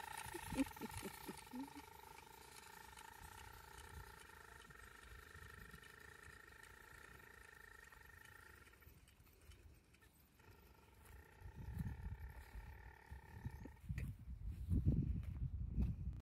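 A faint, steady high-pitched whine from a small motor. It breaks off for about two seconds just past the middle, then starts again and stops a couple of seconds before the end. Low rumbles come in during the last few seconds and are the loudest part.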